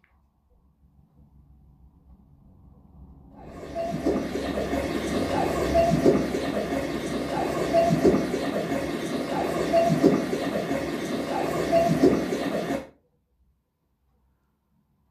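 LG OLED TV speakers playing the AI Acoustic Tuning test sound, a rushing noise signal the TV's remote microphone picks up to measure the room. It builds up over the first few seconds, then holds steady with a pulse about every two seconds, and cuts off suddenly near the end.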